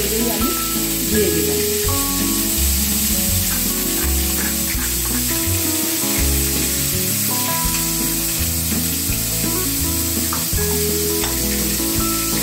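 Onion, ginger, green chilli and tomato paste frying in hot oil in a steel wok, a steady sizzle as it is spooned in, over background music with a moving bass line.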